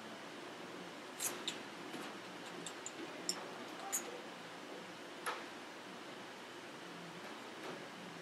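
Pen on a sheet of paper on a wooden table, making short marks: a handful of faint taps and scratches, the sharpest about a second in, near four seconds and just past five seconds, over steady room hiss.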